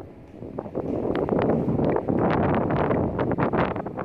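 Wind blowing across a phone's microphone: a steady rush with frequent crackles, after a brief lull at the start.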